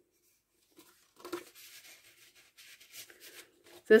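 Paper and fabric pages of a handmade junk journal being handled and turned, giving faint, scattered rustles and soft scrapes.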